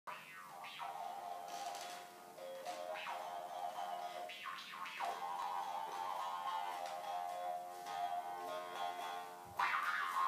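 Harmonica played in sustained chords, with notes sliding in pitch. It grows louder near the end.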